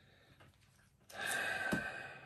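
Crown cap being pried off an old glass Coca-Cola bottle with a bottle opener: a short, little hiss of escaping gas about a second in, with a click as the cap comes free.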